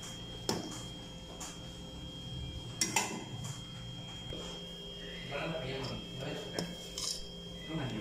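Metal spoon knocking and clinking against a cooking pot of lentil soup, a few sharp knocks spread through the stirring, over a faint steady hum.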